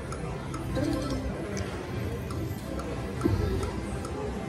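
Slot machine spinning its reels: light ticking and the game's chiming sound effects over a busy casino background.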